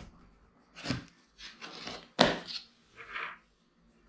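A cardboard retail box being opened by hand: several short scraping, rasping rubs of cardboard on cardboard as the lid is worked loose and lifted. The sharpest, loudest scrape comes a little past two seconds in.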